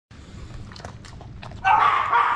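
A dog eating kibble from a metal bowl, with soft scattered clicks and crunches. Near the end comes a louder dog vocalization.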